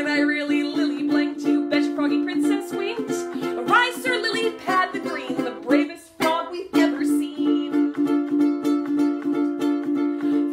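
Ukulele strummed steadily, with a voice sounding over it at times. The strumming breaks off for under a second about six seconds in, then picks up again.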